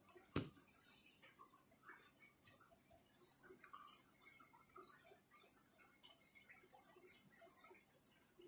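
Near silence with faint scattered ticks and one sharper click about half a second in: handling noise from a smartphone being held and moved.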